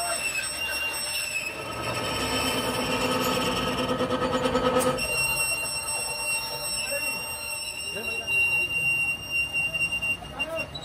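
A metal lathe turns a steel semi-trailer axle, with a steady high-pitched whine throughout. A louder, steady humming tone joins for a few seconds and cuts off suddenly about halfway through.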